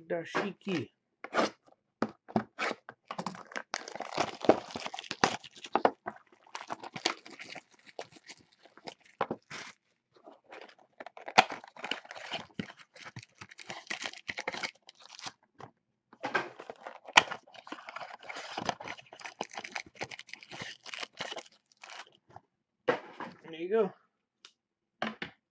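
Plastic shrink wrap being torn and crinkled off sealed trading-card boxes, with card packs rustling and clicking as they are pulled out and stacked. The crackling comes in several stretches of a few seconds each, broken by sharp clicks.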